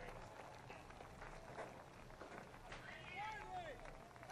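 Faint, distant voices of people talking over a steady low background hum.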